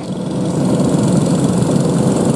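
Engines of a full field of dirt-track racing karts running together on the starting grid before the green flag: a loud, dense, steady drone that builds slightly in the first half-second.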